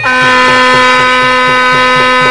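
A loud, steady held note from a wind instrument at one fixed pitch with bright overtones, sounding over fast drumming in the temple music.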